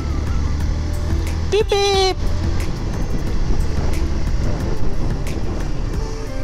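Motorcycle running along a road with wind on the camera's microphone, a steady low rumble with no break. About a second and a half in there is one brief pitched call, about half a second long.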